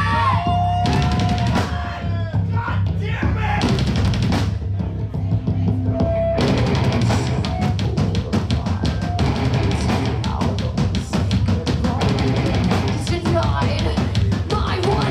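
Live heavy metal band playing: drums, electric guitars and bass, with a voice over the first few seconds. About six seconds in the drums go into a fast, steady beat.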